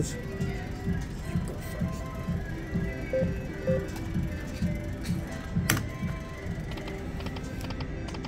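Casino floor background: slot machine music with a steady low beat, with one sharp click a little under six seconds in.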